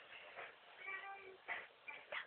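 Staffordshire bull terrier sucking her tongue: a faint short, high squeak about a second in, followed by two sharp wet clicks.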